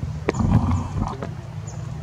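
A macaque's short, low, rough call about half a second in, over a steady low background rumble.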